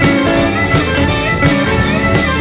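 Live blues band playing an instrumental passage with no vocals: drum kit keeping the beat under electric guitar and keyboards.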